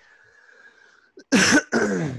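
A man clearing his throat: two short, loud, harsh coughs in quick succession after about a second of quiet.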